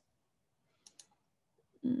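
Two quick, faint clicks about a second in, like a computer mouse double-click, with near silence around them. Near the end comes a short hummed 'mm'.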